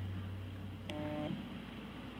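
Pause in a speech: faint room tone over a microphone, with a low hum in the first second and a brief faint electronic tone with a click about a second in.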